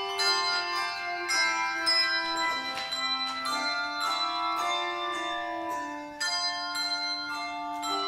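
A handbell choir ringing a piece: chords of handbells struck every half second to a second, each note ringing on and overlapping the next, with a short lull a little after six seconds before the next chord.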